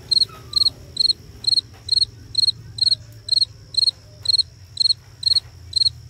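A cricket chirping steadily and evenly, about two high-pitched chirps a second.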